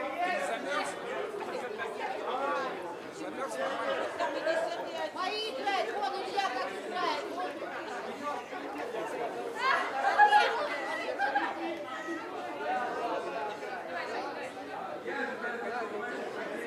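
Many people talking at once: overlapping chatter of players and onlookers, with one louder voice rising out of it about ten seconds in.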